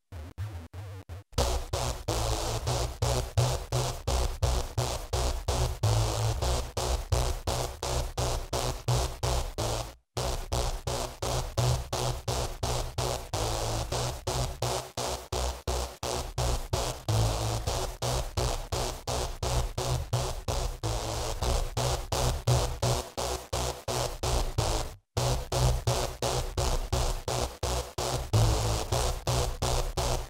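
A pulsing electronic synth lead playing through a subharmonic generator plugin, with a thick added sub-bass under it. The pulses are rapid and even, about four a second, and playback stops briefly and restarts about a second in, about ten seconds in and about twenty-five seconds in.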